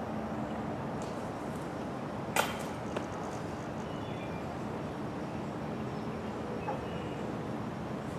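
A thrown golf disc strikes the metal disc golf basket once with a sharp, briefly ringing clang about two and a half seconds in, followed by a smaller knock. The putt does not stay in.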